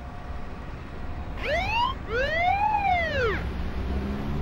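A wolf whistle: a short rising note, then a longer note that rises and falls, over a low steady rumble.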